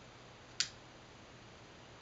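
A single sharp click about half a second in as a small pipe lighter is sparked and lights, over faint room tone.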